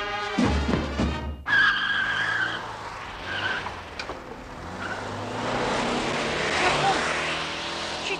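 A brass marching band plays and cuts off abruptly about a second and a half in. A car's tyres then squeal for about a second as it pulls away, and its engine and road noise run on, swelling near the end.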